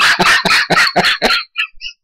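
A man laughing: a fast run of loud bursts, about seven a second, that breaks off about a second and a half in into a few faint high squeaks.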